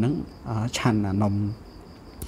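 A man speaking in a slow reading voice, stopping about one and a half seconds in. A faint, steady, high-pitched tone runs underneath and is left alone in the pause.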